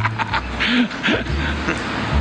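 Laughter: a few short, breathy chuckles after a joke, over a low background rumble.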